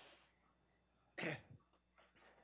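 A short, faint cough at the start, then a voice says 'okay' about a second in, with quiet room tone between.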